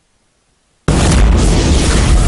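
Near silence, then a little under a second in a sudden loud cinematic boom with heavy bass that carries on as a dense, sustained rumble: the sound effect that opens a film's production-logo sequence.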